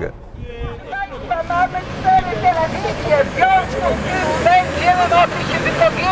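Speech: a voice talking over a low, steady rumble of street noise.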